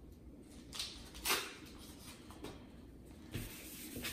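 An alcohol prep pad packet being torn open and handled: short crinkly rips, the loudest about a second in, then quieter rustles and a soft bump near the end.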